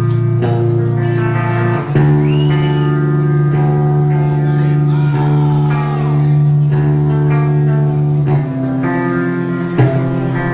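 Black metal band playing live: electric guitars and bass holding long, ringing chords that change about two seconds in and again near the end, with a few sliding notes in between.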